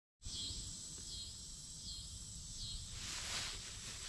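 Outdoor summer field ambience: insects keep up a steady high-pitched drone, with a short chirp repeating about every 0.7 s, over a low wind rumble on the microphone. A broader rush of noise comes in near the end.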